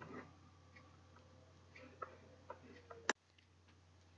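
Near silence: faint room tone with a few small ticks or clicks, then a sharper click about three seconds in, after which the sound cuts off to dead silence.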